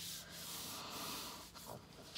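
Hands rubbing over a folded sheet of white computer paper on a tabletop, pressing the fold flat: a soft, dry brushing sound that fades after about a second and a half.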